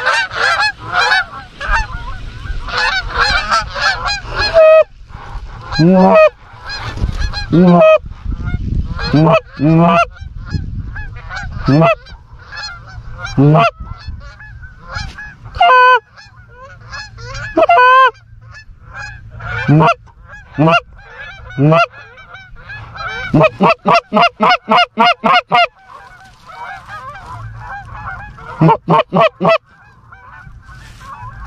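A flock of Canada geese honking continuously overhead, answered by about ten loud, close goose calls that each break sharply up in pitch from a low note, the hunters calling to the flock. A little over three-quarters of the way through comes a fast run of about a dozen clucks, about five a second.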